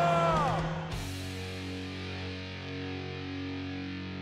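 Background music: notes slide down in pitch in the first half-second, then about a second in it drops suddenly to a quieter held chord that rings on.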